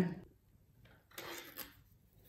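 Faint, brief rustle and light handling of knitting on a circular needle, the needle and its cable moving in the hands, about a second in.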